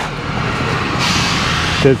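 Steady vehicle running and road noise from a vehicle moving across a snowy, rutted yard, with a louder hiss about a second in that stops just before speech resumes.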